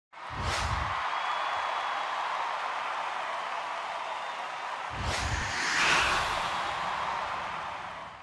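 Sound-design title sting: a deep boom with a whoosh, then a steady airy wash, and a second boom with a rising swoosh about five seconds in that fades away before the end.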